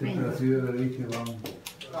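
Speech: a voice talking for about a second and a half, followed by a few short, sharp clicks.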